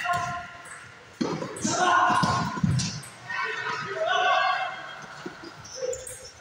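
Indistinct voices in a large, echoing hall, with a few light taps of table tennis balls near the end.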